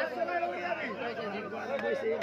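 Several people talking at once, crowd and players chattering between rallies, over a steady low hum.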